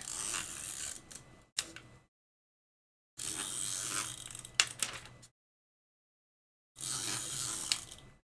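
Paper rustling and crackling as a hand rubs a sheet flat onto a taped journal page, in three stretches of about two seconds each with a few sharp crackles.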